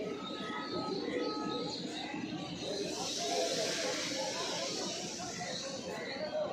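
Railway platform ambience: a background murmur of people's voices, with short bird calls about half a second and a second in. A high hissing rush swells between about three and five seconds.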